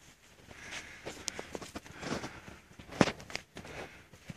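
Footsteps on concrete with scattered light scuffs and clicks, the sharpest one about three seconds in.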